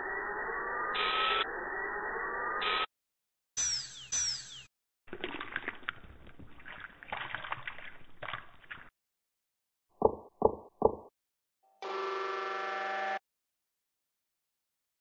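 A string of separate short sound effects: a whirring noise with rising whines for about three seconds, two quick falling high-pitched whooshes, several seconds of crackling, three sharp clicks, then a brief sound with several steady pitches.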